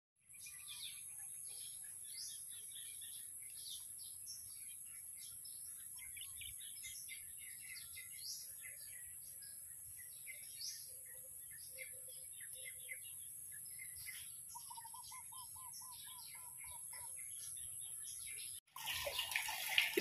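Outdoor ambience of many small birds chirping and calling over a steady high-pitched whine. Near the end comes a run of evenly repeated call notes, about four a second. About a second before the end it cuts to louder splashing water.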